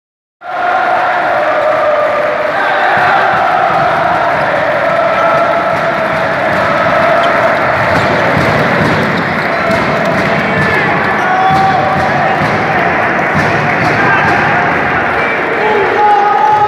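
A team of basketball players celebrating in a huddle, chanting and shouting together in unison, with sharp claps and stamps on the court throughout.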